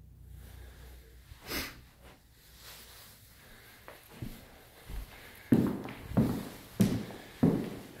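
Footsteps on a hardwood floor, about four paced steps in the last few seconds, with a single short sniff about one and a half seconds in.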